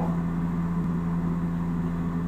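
Steady low drone of a propeller airliner's engines in cruise, heard from inside the cockpit, with a constant low hum.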